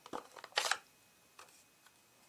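A few brief scratchy handling noises from a plastic ink pad case, the louder one about two-thirds of a second in, then a couple of faint ticks.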